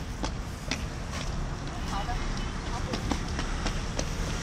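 Steady low outdoor rumble of traffic and wind, broken by several sharp clicks, with faint snatches of voices.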